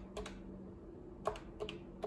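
Keypad buttons of a Yealink T54W desk phone being pressed to enter a Wi-Fi password. About six short plastic key clicks: a pair at the start, then a quick run of four in the second half.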